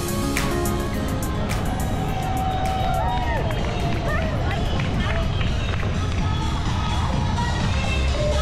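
Live outdoor sound from a bicycle-mounted camera riding toward an event finish line: a steady low rumble of wind and road, with voices calling out and music from the finish area mixed in.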